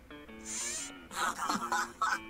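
Quiet background music with short held notes that change pitch in steps, and a brief hiss about half a second in.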